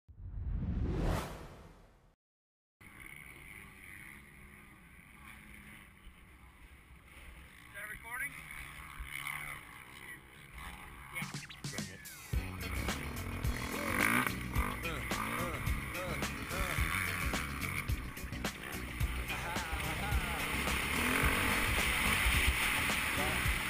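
A short rising whistle-like sweep over the opening title, then a moment of silence. After that, a Kawasaki KX450's four-stroke single-cylinder engine runs low at first, then revs harder and louder from about halfway through as the bike rides off, with wind noise on the camera mic.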